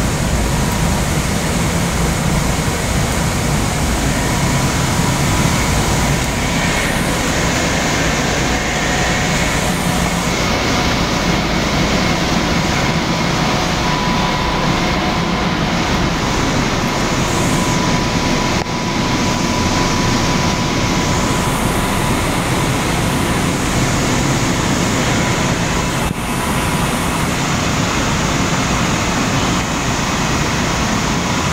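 Steady noise of a Long Island Rail Road electric train standing at an underground platform: a constant hum and rush from its running equipment, with a faint steady whine over it.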